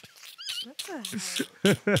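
Men laughing hard and nearly silently, with squeaky high-pitched wheezes and a drawn-out falling whine, then a short louder laugh near the end.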